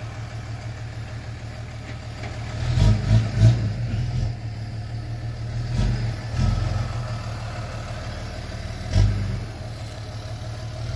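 Tow truck engine running steadily as it pulls a mobile home, with brief louder low surges about three seconds in and again near the end.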